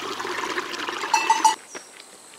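Water trickling and splashing in a small stream as hands work in it, with a brief high-pitched sound just before the water cuts off suddenly about one and a half seconds in. A faint steady high hiss remains after that.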